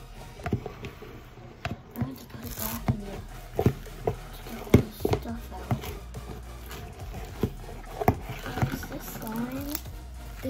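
A utensil stirring glue slime full of foam beads in a clear plastic bowl: irregular clicks, taps and short scrapes against the bowl.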